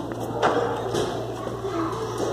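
Young children's voices, short wordless calls and babble that rise and fall in pitch, with a sharp knock about half a second in.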